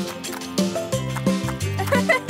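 Cartoon background music with held, stepping notes. Near the end comes a short warbling, gobble-like sound effect.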